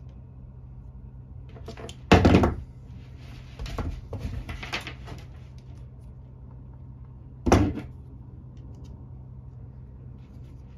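Hand tools handling on a plywood work board: two sharp knocks about two and seven and a half seconds in, with lighter rustling and clicking of wires and diagonal cutters between them, over a steady low hum.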